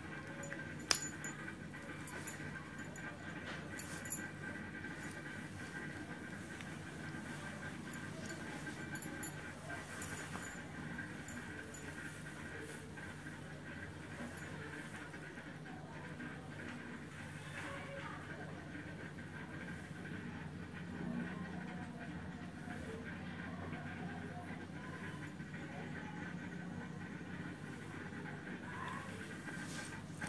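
Faint steady hum of an aquarium air pump driving a sponge filter, with two sharp clicks about one and four seconds in as the heater and its suction cups are handled against the tank.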